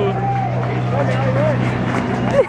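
A man's voice ends a held sung note, then vocalizes in short wavering glides, over a steady low hum.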